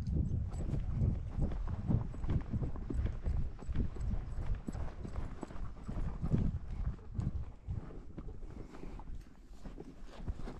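Hoofbeats of a ridden horse walking on sandy dirt, a run of soft, irregular thuds.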